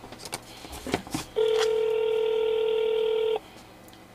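Telephone ringback tone: one steady ring about two seconds long, starting a little over a second in, on a call that is going unanswered. A couple of faint clicks come before it.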